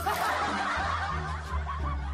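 Laughter from several voices at once, dying away over the second half, over steady background music.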